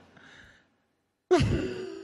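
A woman's voice sighing: a faint breathy trail, a short gap of dead silence, then about a second in a louder drawn-out sigh held on one pitch and fading away.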